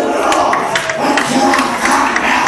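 Church congregation singing together, many voices overlapping, over a sharp rhythmic beat about three times a second.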